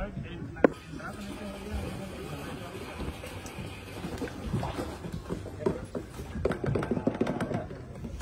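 Indistinct voices and music in the background, with a sharp click a little over half a second in and scattered small knocks from handling.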